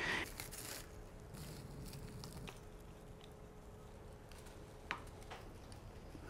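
Faint rustling and crunching of gritty perlite potting mix and roots being handled and pressed into a plastic flat, with one brief click about five seconds in. A faint steady hum runs underneath and stops just after the click.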